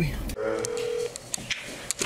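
A phone's ringback tone playing through an iPhone on speakerphone: one steady tone lasting under a second, followed by a few faint clicks.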